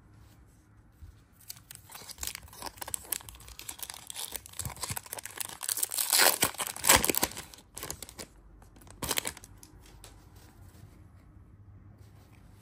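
A 2024 Topps Chrome Update trading-card pack wrapper being torn open and crinkled by hand, a run of irregular crackling rips that is loudest about six to seven seconds in and dies down a few seconds before the end.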